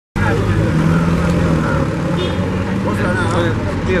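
A motor vehicle's engine running steadily with a low hum, with people's voices talking over it.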